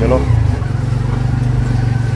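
Tuk-tuk's small engine running steadily while the vehicle rolls along the street, its note stepping up slightly a moment in.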